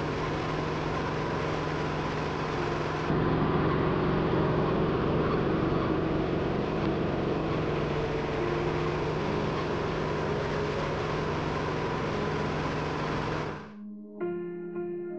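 Small engine-driven grinding mill running steadily, a dense mechanical noise over a low engine hum. It gets louder about three seconds in and cuts off suddenly near the end.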